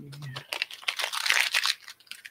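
Plastic packaging crinkling and rustling in the hands for about a second and a half.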